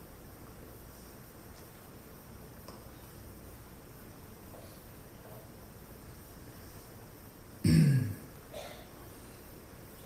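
Faint steady hiss of a quiet, closed room heard on a played-back recording. About three-quarters of the way through comes one short, loud voice-like sound, a cough or a brief word, falling in pitch, with a smaller one just after.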